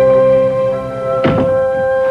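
Orchestral background score of long held string notes, with a single dull thud about a second and a quarter in.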